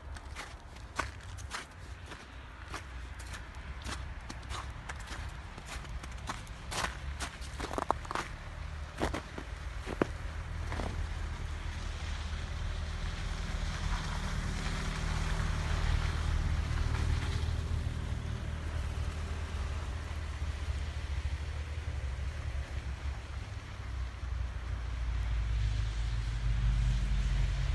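Footsteps crunching in fresh snow, an irregular step or two a second, for the first ten seconds or so. They then give way to a steady low rumble and hiss that grows louder toward the end.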